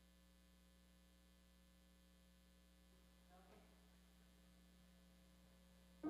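Near silence: a faint, steady electrical mains hum, with one faint brief noise about halfway through.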